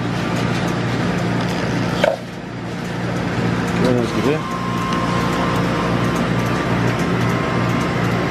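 Frozen carbonated drink (Slurpee) machine running with a steady hum while blue raspberry slush is dispensed from its tap into a paper cup, with a sharp click about two seconds in.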